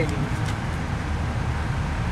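Steady low rumble of outdoor background noise, with a faint click about half a second in.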